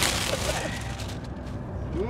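Plastic packaging bag crinkling and rustling as a folded blanket is pulled out of it, fading about a second in. Underneath, the steady low drone of the moving bus.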